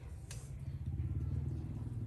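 A steady low engine rumble, with a faint click about a third of a second in.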